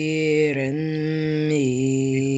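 A man reciting the Quran in a chanted style, drawing out one long held vowel that steps slightly in pitch along the way.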